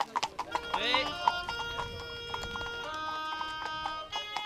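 Instrumental background music with held notes, over the clip-clop of a carriage horse's hooves on the road. The hooves are plainest in the first second or so.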